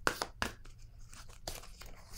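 A deck of oracle cards shuffled by hand: a run of short, sharp papery snaps in the first half-second, then fainter scattered rustles of cards.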